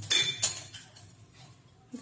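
A metal kitchen utensil clinks sharply once just after the start, with a short bright ring, followed by quieter clatter of steel utensils.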